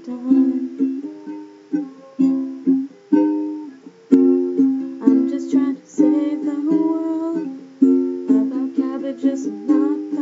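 Chords strummed on an acoustic string instrument, each strike ringing and fading before the next, with no singing over them. There is one brief click about four seconds in.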